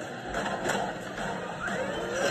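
Cartoon soundtrack playing from a laptop speaker: sound effects with a couple of sharp accents and a rising glide near the end, over background music.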